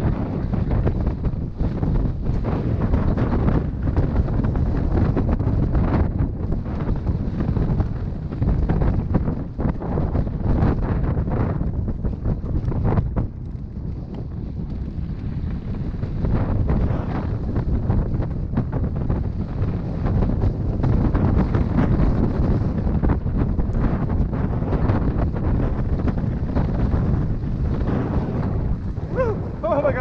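Wind rushing over the microphone of a mountain bike's camera during a fast descent on a dirt trail, with the rumble of the tyres and many knocks and rattles of the bike over bumps.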